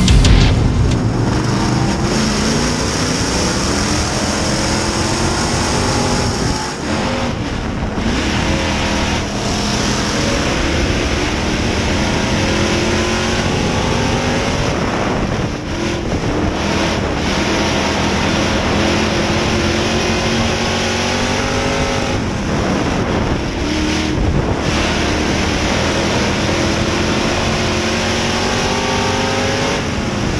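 Street stock dirt-track race car's engine at racing speed, heard from inside the car. The revs climb in long rises and drop back briefly about every eight or nine seconds as the driver lifts for the corners.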